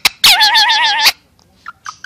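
Indian ringneck parakeet giving one long, loud, wavering call of about a second, just after a brief sharp chirp, then a few short squeaks near the end.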